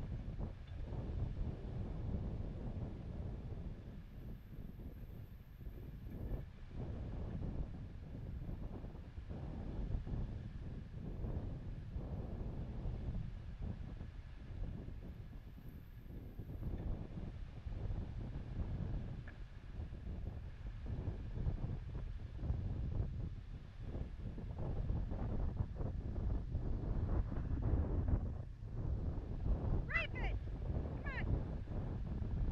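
Wind buffeting the microphone, a low rumble that rises and falls in gusts, with a compact tractor's engine running beneath it.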